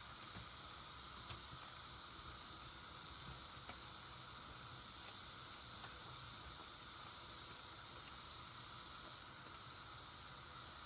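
Thick soap suds fizzing with a steady crackle of popping bubbles as soapy sponges are squeezed and pressed into them, with a few faint clicks.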